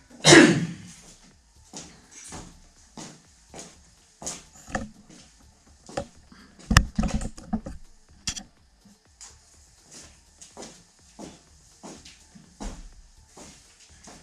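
Irregular knocks, clicks and rustles of handling: a loud thump right at the start, then scattered light taps and a sharp click with a dull thud about seven seconds in, as the camera is picked up and repositioned in a small room.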